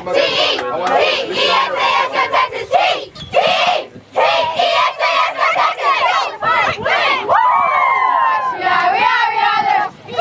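A team of young girls in a huddle, chanting and shouting together, with high whoops and cheers about seven seconds in.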